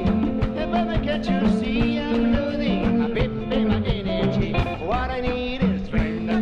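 Live band music: drum kit and congas keeping a busy beat under electric guitar and upright double bass, with a melody line that glides upward about five seconds in.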